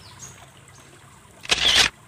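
A brief rustling scrape about a second and a half in, lasting about a third of a second: handling noise as a plastic toy fire truck is turned in the hand. Under it, faint trickling water from a shallow drain.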